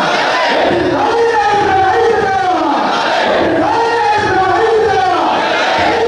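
A crowd chanting political slogans in unison. A short shouted phrase repeats over and over, with many voices overlapping.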